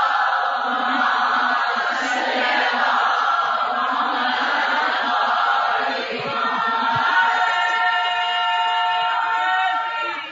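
Voices chanting in unison at a Shia mourning gathering (majlis). About seven seconds in, a single voice holds long sung notes.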